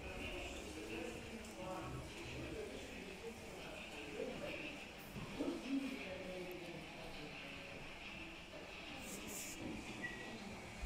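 Indistinct voices of other people talking in an exhibition hall, too faint to make out, with light room noise and a few small clicks near the end.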